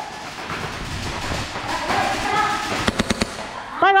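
Airsoft gunfire: a steady crackle of shots across the arena, with a quick string of about five sharp shots a little before the end.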